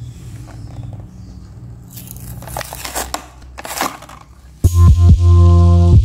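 Plastic blister packaging of a carded toy crinkling a few times as it is handled. About two-thirds of the way in, loud music with sustained chords and a beat starts suddenly.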